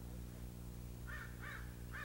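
Faint bird calls: three short calls in quick succession starting about a second in, over a steady low electrical hum.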